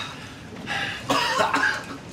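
A person coughing, in a few rough bursts that start a little past halfway.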